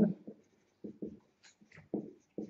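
Marker pen writing on a whiteboard: several short, separate strokes with small gaps between them.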